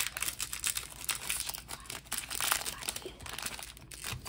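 Foil wrapper of a Pokémon Crown Zenith booster pack being crinkled and torn open by hand, a rapid, irregular crackle.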